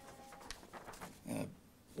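A quiet pause at a pulpit microphone: faint handling of a sheet of paper, a small click about half a second in, and a short, soft vocal sound from the preacher near the end.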